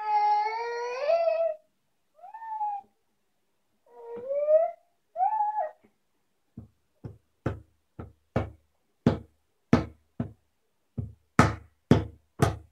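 A baby vocalizing: one long high squeal, then three short calls. About six and a half seconds in, the baby's hand starts slapping the top of a wooden dresser, about two slaps a second, growing louder.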